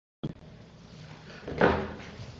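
An audio feed switching on out of dead silence with a sharp click, then a low steady room hum and one loud thump about a second and a half in, as a remote microphone comes live.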